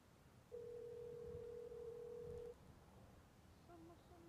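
A single steady electronic tone, held for about two seconds and starting half a second in. Short, lower beeps begin near the end, over a quiet rumble inside the car.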